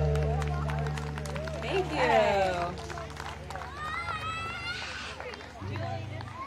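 A rock band's last chord, low bass and guitar notes, ringing out and fading over the first two seconds or so. Voices call out with rising, sliding pitch about two seconds in and again near the five-second mark.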